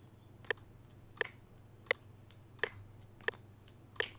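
Computer mouse button clicked in an even rhythm, five sharp clicks about 0.7 s apart (roughly 86 beats a minute). They are taps on FL Studio's tempo tapper, setting a slow boom-bap tempo.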